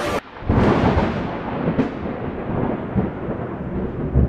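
Thunder: a crack about half a second in and another near two seconds, then a rolling rumble that slowly fades.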